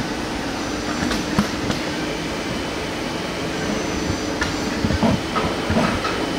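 Doosan Puma 2600 CNC lathe running with a steady hum, its tool turret moving with a few sharp clicks about a second in and a series of clunks near the end.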